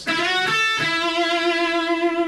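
Electric guitar, a gold-top Les Paul-style, playing a short lead phrase: a note slid up on the third string, a brief higher note on the second string, then a long held note back on the third string with wide vibrato.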